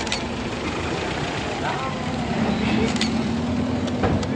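A motor vehicle's engine running steadily at idle, its drone growing a little stronger in the second half, with indistinct voices in the background.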